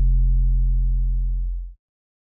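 Final note of an electronic trap track: a deep, steady sub-bass synth tone that slowly fades, then cuts off suddenly near the end.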